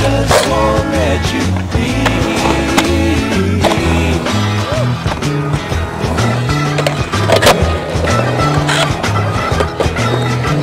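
A song with a steady bass line plays over skateboard wheels rolling on concrete, with sharp clacks and knocks of the board, the loudest about seven and a half seconds in.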